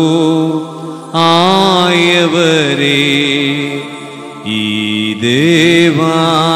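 Sung liturgical chant with instrumental accompaniment: long held sung notes over sustained chords that change about a second in and again about four and a half seconds in.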